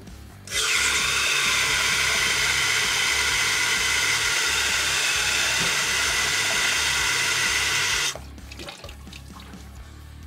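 Tap water running from a sink faucet into a plastic jar, a steady hiss that starts about half a second in and cuts off about eight seconds in when the tap is shut.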